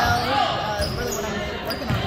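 Basketballs dribbled on a gym floor, short thuds in the background under a voice.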